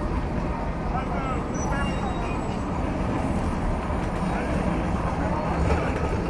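Busy city street ambience: a steady wash of road traffic with people talking in the crowd.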